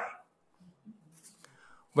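A speaker's voice ends a sentence, then a pause of about a second and a half with only faint low sounds, and speech starts again at the end.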